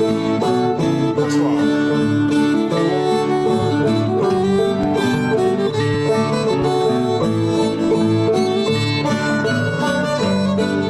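Fiddle and guitar playing an old-time tune together, in a remote jam recorded through a JamKazam online session.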